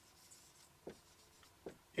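Faint marker pen strokes on a whiteboard as a line of handwriting is written, with a few short scrapes standing out a little under a second in and again near the end.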